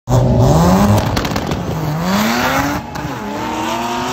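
Drag-racing cars launching off the start line and accelerating hard down the strip, engine pitch climbing and falling back at gear changes about a second in and about three seconds in.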